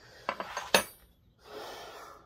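Steel wrenches clinking against each other and the wooden bench as one is set down among the other tools. There are a few sharp knocks, the loudest with a bright metallic ring about three-quarters of a second in, then a softer rubbing rustle near the end.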